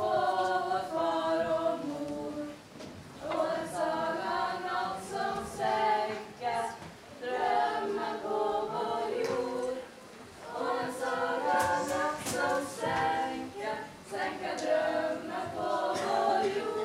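A group of young voices singing together as a choir, in phrases of a few seconds with short breaths between them.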